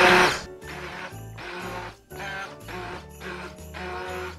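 An immersion blender running in thick soup cuts off about half a second in. Background music with a bass line carries on after it.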